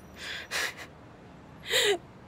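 A woman's stifled laughter: three short breathy puffs, the last ending in a brief voiced sound.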